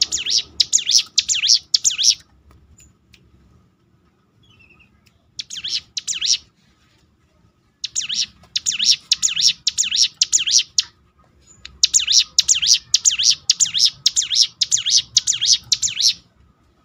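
Hill prinia (ciblek gunung) singing: loud runs of rapid, sharp, repeated high notes at about three a second, broken by pauses. The bird sings a run until about two seconds in and a short burst around six seconds, then long runs from about eight seconds to the end.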